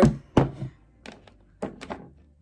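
Hair-product containers, a plastic spray bottle and a jar, being handled and put down: a thunk about half a second in, then a few lighter knocks and clicks near the end.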